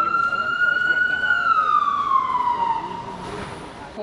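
Emergency vehicle siren in one slow wail: the pitch climbs gently for about the first second, then falls and levels off, fading near the end.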